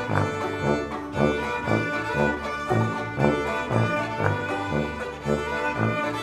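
Chamber ensemble music led by bowed strings, over a steady pulse of low notes about two a second.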